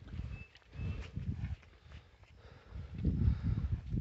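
Cattle munching feed from a trough close by: irregular low chewing sounds in bursts, near the start, around a second in and about three seconds in.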